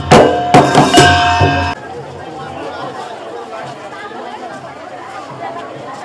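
Procession drums and large brass cymbals played in a quick rhythm of loud strikes with ringing metal overtones. They cut off suddenly under two seconds in, leaving a crowd chattering.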